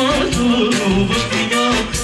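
Amplified live band music with a man singing into a microphone over a regular drum beat and bass line.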